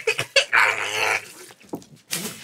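A man spluttering milk from a mouthful gulped from a plastic jug: a few short sputters, then a held, strained vocal sound through the milk for most of a second.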